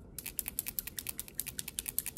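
A nail polish bottle being shaken, its mixing ball clicking rapidly and evenly against the glass, about a dozen clicks a second, starting just after the start.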